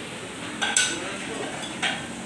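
Chopsticks clinking against a tabletop grill pan as meat is turned, a few sharp clinks about a second apart over low background chatter.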